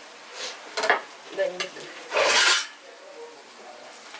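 Metal slotted ladle and spoons clinking and scraping against a plate and frying pan while fried adhirasam are lifted out and pressed, a few short clicks with one louder half-second rasp about two seconds in.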